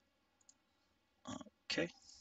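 Mostly quiet room tone with a single faint computer-mouse click about half a second in, then a short vocal sound and the spoken word "okay" near the end.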